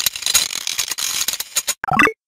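Computer mouse clicking rapidly and unevenly, a dense run of sharp clicks that stops a little before the end. A separate short click sound with more body begins near the end.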